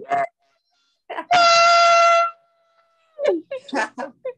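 A man's loud vocal warm-up over a video call: one held note about a second long, flat in pitch, so loud it sounds harsh like a horn. Laughter follows near the end.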